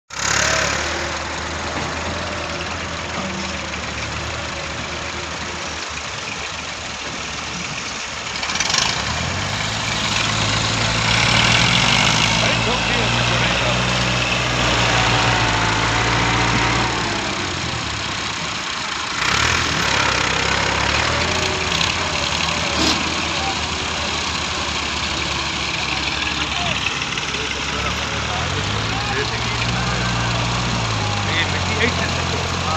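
Diesel engines of tractors and a hydraulic excavator running, their pitch shifting as they rev up about nine seconds in and again near the end.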